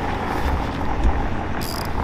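Hand ratchet wrench clicking fast and evenly as the bolts of a car's front spoiler lip are worked, to raise the spoiler back up.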